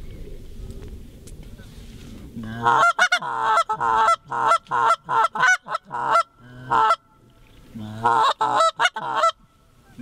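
Hand-blown goose call worked in a rapid, loud run of short honking notes, starting about two and a half seconds in, pausing briefly, then a final burst, calling to incoming geese.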